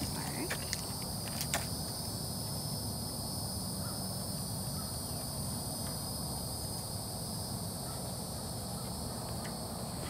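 Steady high-pitched chorus of outdoor insects, crickets, running evenly over a low background rumble, with a few faint clicks in the first second and a half.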